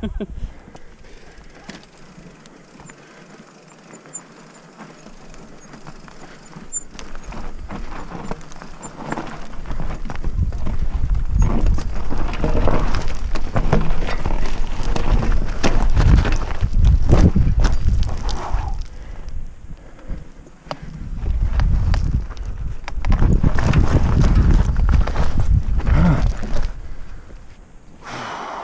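Mountain bike ridden over a rough, rocky track, heard from a helmet camera. The tyres and frame rattle and knock over stones above a heavy low rumble. It starts about ten seconds in, eases off briefly around twenty seconds, then comes back loud.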